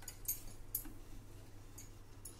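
Wooden spatula stirring thick cooled custard in a steel pot, giving a few quiet, short scrapes and taps against the pot.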